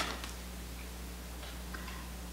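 Quiet room tone with a steady low hum, opened by one sharp click.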